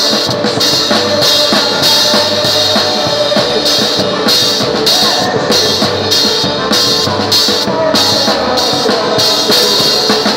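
Live forró band music driven by a drum kit: a steady beat of kick and snare hits with bright cymbal strokes about twice a second, over the band's other instruments.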